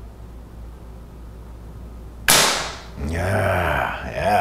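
A single shot from a Crosman 392PA .22 multi-pump pneumatic air rifle: one sharp crack a little over two seconds in, dying away within half a second, followed by a man's voice.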